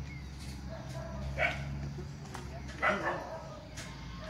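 Two short animal calls, barks or grunts, about a second and a half apart, over a steady low hum.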